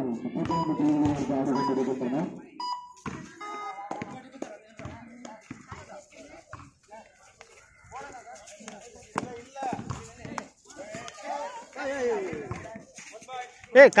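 Kabaddi players and spectators shouting during play: a long held call in the first two seconds, then scattered calls, louder near the end.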